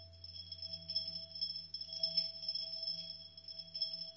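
Hand-built electronic circuit held to the mouth, sounding several steady high electronic tones with a lower tone beneath; they waver and pulse in loudness over a steady low hum.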